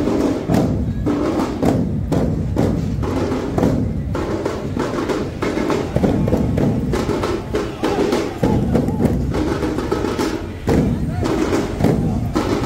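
Large hand-held drums beaten by a Muharram mourning procession, a dense stream of booming strikes, with voices over the beat.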